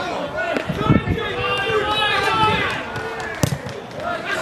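Footballers shouting to one another on the pitch during open play, with a few sharp thuds of the ball being kicked, the sharpest about three and a half seconds in.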